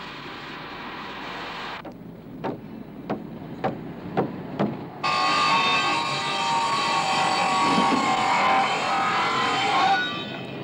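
Portable electric circular saw working timber: about two seconds of steady cutting noise, then a run of sharp knocks roughly twice a second, then the saw running loud with a high, many-toned whine through the second half.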